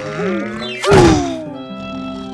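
Cartoon background music with a single loud thunk sound effect about a second in, followed by a falling tone.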